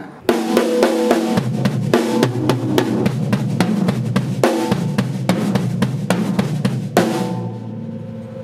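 Acoustic drum kit playing a triplet-based break at slow tempo, strokes split between the hands on the snare and toms and the feet on a double bass-drum pedal. The playing stops about seven seconds in and the drums ring out.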